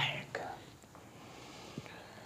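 A man's voice trailing off at the end of a word, then a pause with only faint room noise and a small click near the end.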